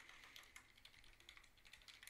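Faint clicking of computer keyboard keys: a quick, uneven run of keystrokes as a short line of text is typed.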